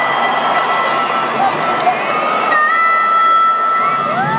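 Live stadium concert intro: a reedy harmonica melody of long held notes, some bending in pitch, over a loud, noisy crowd. A new note glides up near the end.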